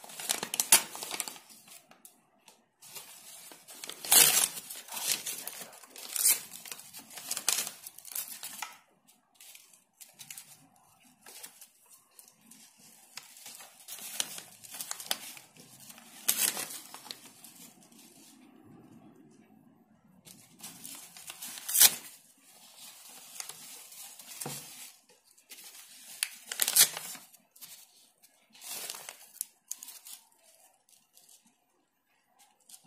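Glossy magazine paper torn by hand into small pieces in short, irregular rips, with crinkling as the pieces are handled.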